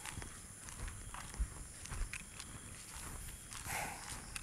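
Footsteps of a person walking on an asphalt road, a scatter of soft, irregular steps, with a brief rustle of a carried bag near the end.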